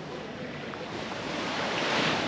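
Small waves washing onto a pebble beach, the wash swelling toward the end.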